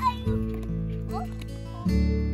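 Background music: sustained low bass notes that change about every second and a half, with short sliding higher notes over them.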